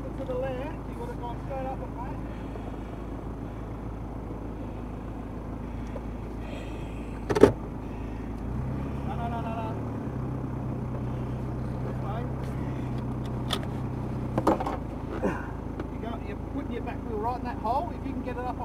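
Toyota Prado 90 series engine idling steadily while the vehicle stands still. Its low note shifts for about six seconds in the middle. A single sharp click stands out about seven seconds in, with a smaller one around fourteen seconds.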